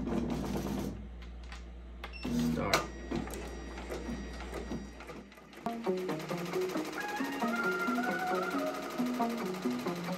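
A steady low hum and a few light clicks at a multi-needle embroidery machine. About halfway in the hum drops out and background music with a stepping melody comes in.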